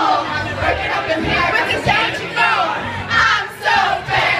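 Several women singing and shouting along loudly into karaoke microphones, their voices overlapping, over backing music with a bass beat.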